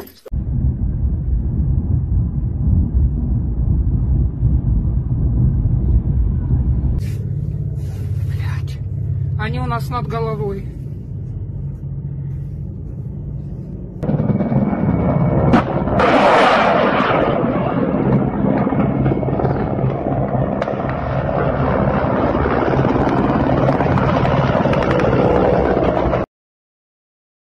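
A low, steady droning music bed; about halfway through, a loud rushing roar of helicopters flying low joins it.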